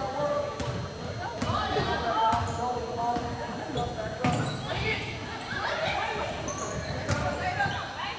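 Basketball bouncing on a hardwood gym floor as it is dribbled, the bounces echoing in the hall, over indistinct voices of players and spectators.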